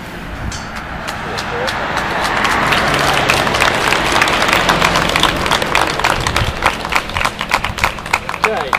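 A small crowd applauding. The clapping builds up a couple of seconds in and is thickest through the middle, then thins out near the end.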